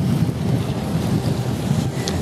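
Steady wind buffeting the microphone, a low rumbling rush, with sea surf washing on the rocks beneath it.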